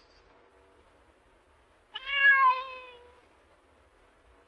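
A cat meowing once, about two seconds in: a single call of about a second that falls in pitch toward its end.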